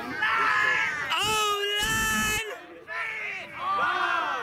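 Sideline players yelling and hollering wordlessly during an ultimate frisbee point, with long, high, drawn-out shouts that bend in pitch.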